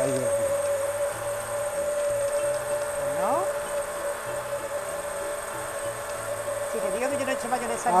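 Hand-held immersion blender running steadily with a constant whine, its blade emulsifying egg and a thin stream of sunflower oil into mayonnaise as the sauce starts to thicken.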